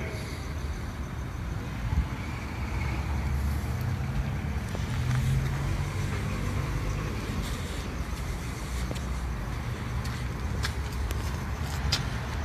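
Low, steady rumble of city street traffic, which swells for a few seconds around the middle as a vehicle passes.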